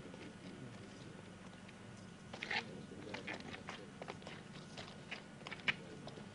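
Faint scattered footsteps and scuffs of several people walking, over a low steady hum.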